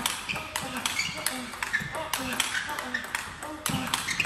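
Table tennis rally: the ball clicks off the rubber bats and pings on the Stiga Expert table top in quick alternation, several hits a second.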